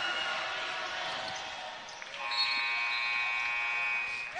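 Arena scorer's-table horn sounding one steady, multi-tone blast for nearly two seconds, starting about halfway in, signalling a substitution at the dead ball after a made free throw. Before it, a general crowd murmur in the gym.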